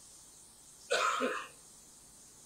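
A man clears his throat once with a short cough, about a second in, lasting about half a second.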